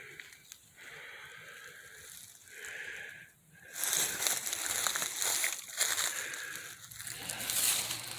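Footsteps crunching through dry leaves, twigs and brush, a crackly rustle that starts about four seconds in.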